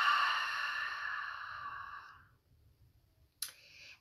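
A woman's long, audible exhale through the mouth during a guided deep breath, fading out about two seconds in. A short mouth sound follows just before she speaks again.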